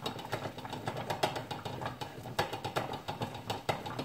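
Rapid, irregular clicks and light clatter of small items being handled on a table.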